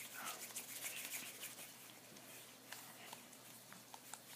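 Faint sticky crackling and small clicks of homemade glue-and-detergent slime being rolled into a ball between the palms, busiest in the first second or so, then fainter with a few scattered clicks.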